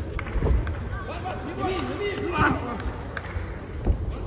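Men shouting over an amateur boxing bout, calls from ringside in a large, sparse hall, with a few dull thuds from the ring, the loudest near the end.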